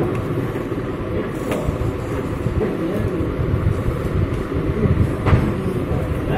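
A few sharp clicks of plastic laptop casing being handled, one about a second and a half in and one near the end, over a steady low rumble.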